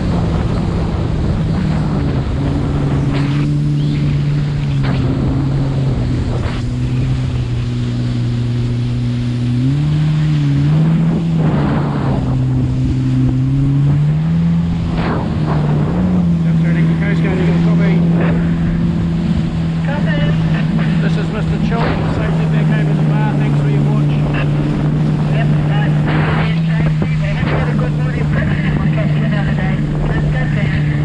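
Jet ski engine running steadily under way, with water spray and wind on the microphone. The engine's pitch dips and wavers about ten seconds in, then settles a little higher from about fifteen seconds on.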